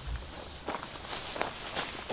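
Footsteps of a person walking across the dirt and twig-strewn ground of a forest campsite: about four uneven steps, the sharpest about halfway through.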